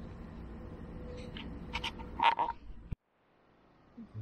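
A few short, sharp animal calls over a steady outdoor background hiss, the loudest about two and a quarter seconds in; the sound cuts off abruptly near three seconds.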